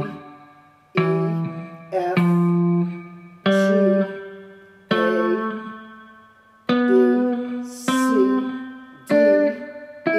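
Electric guitar picking single notes one at a time up a C scale of natural notes (D, E, F, G, A, B, C, D). Each note rings and fades before the next, roughly one a second, climbing in pitch step by step.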